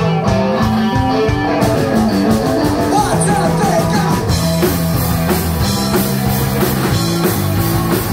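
Rock band playing live: electric guitar and bass guitar over a drum kit. The drums and cymbals come in about a second and a half in, and the full band is going harder from about halfway.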